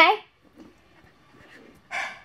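A voice says a short "Okay?" at the start, then only faint room noise, and a brief breathy vocal sound near the end.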